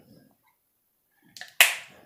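Quick-release catch on an Ettore squeegee handle closing with one sharp click near the end, locking a stainless steel channel in place, just after a few faint ticks of handling.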